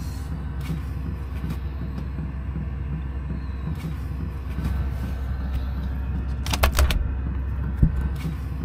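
Steady low rumble, with a quick run of sharp plastic clicks and rattles near the end as the insulating polypropylene plate is pulled away from the van window.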